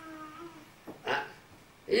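A man's voice holding one level, drawn-out note for under a second, like a sustained 'hmm', then a short breathy syllable just after a second in.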